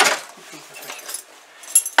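Keys and metal door fittings clattering at a front door. A sharp knock comes right at the start, then light clinks and rustling. A bright ringing metallic jingle comes near the end.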